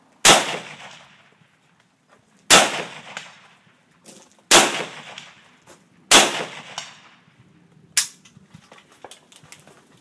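AK-47 rifle firing four deliberate single shots about two seconds apart, each crack trailing off in a short echo. A fainter sharp crack comes about eight seconds in.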